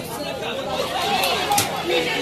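Many voices talking and calling out at once: the chatter of spectators and players around a football pitch. A short sharp knock sounds near the end.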